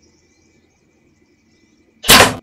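Near silence: faint outdoor background with a faint steady high tone.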